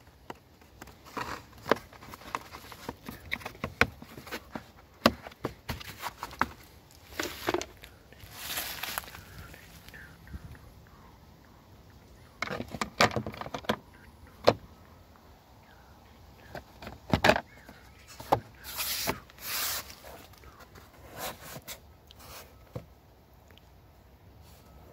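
Plastic car trim and clips being handled: irregular clicks and knocks, with a few short rustles.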